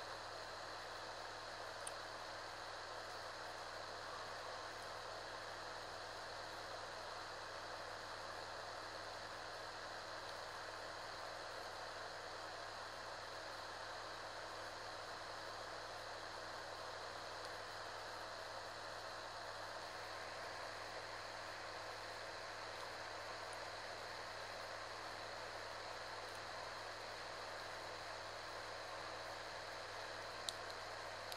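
Steady background hiss with a low hum underneath, unchanging room tone; part of the hiss drops away about two-thirds of the way through, and there is one faint tick about two seconds in.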